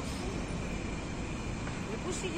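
Steady city street background noise: a low, even hum of distant traffic.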